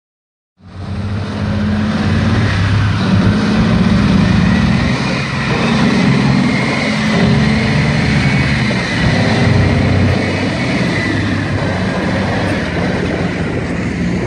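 A heavy tracked armoured vehicle driving across open ground, its engine running loudly under load along with the noise of its tracks. The sound cuts in suddenly under a second in.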